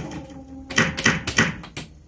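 Fourth-generation Hokuto no Ken pachislot machine with its reels spinning: a short steady tone, then a quick run of sharp clicks as the stop buttons are pressed and the three reels stop one after another within about a second.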